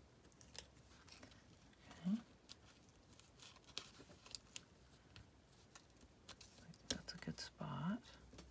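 Faint handling of paper pieces on a tabletop: scattered light taps and rustles as small paper cutouts are tucked into a layered card. A short hum is heard about two seconds in, and a brief murmur near the end.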